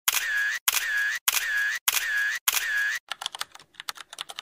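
Five camera-shutter sound effects in an even row, each a sharp click followed by about half a second of mechanical whir. In the last second comes a run of quick keyboard-typing clicks.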